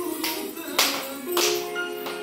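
Oriental dance music playing, with three sharp hand claps a little over half a second apart, the middle one the loudest.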